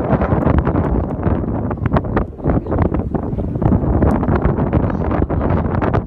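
Wind buffeting the microphone: a loud, gusty rumble with irregular crackling pops.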